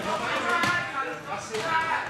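Ringside voices shouting over one another in a large hall, with two short thuds, one about two thirds of a second in and another about a second and a half in.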